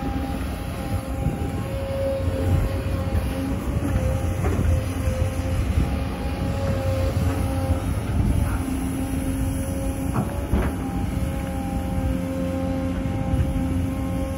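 An XCMG XE215C crawler excavator's diesel engine runs steadily under load as the machine digs wet clay. Steady humming tones waver a little as it works, and a few short knocks come about 4 s in and twice around 10 s.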